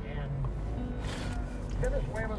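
Low steady rumble of a car driving, heard from inside the cabin, under soft background music, with a brief rush of hiss about a second in.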